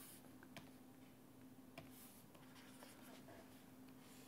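Near silence: a faint steady hum, with two soft clicks about half a second and two seconds in, from a stylus on a writing tablet as writing starts on a fresh page.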